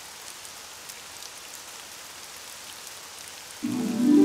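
Steady rain sound effect, an even patter with faint scattered drop ticks. Music comes in loudly just before the end.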